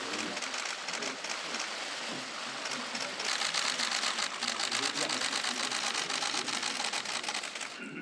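Many press cameras' shutters clicking in rapid, overlapping bursts, growing denser and louder about three seconds in, over a low murmur of voices.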